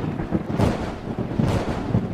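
Thunder sound effect rumbling with irregular swells, the staged thunderclap that goes with a villain's entrance.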